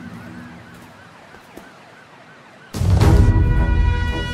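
A faint siren warbling quickly up and down, then loud film music with heavy bass and sustained tones cutting in about three quarters of the way through.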